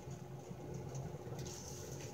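Quiet room noise with a faint steady low hum and no distinct sound event.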